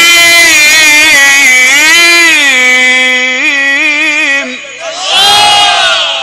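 A Quran reciter's voice in melodic tajweed recitation, amplified through microphones, holds one long ornamented phrase that wavers up and down in pitch. It breaks off about four and a half seconds in. Just after, a crowd of listeners calls out together in approval.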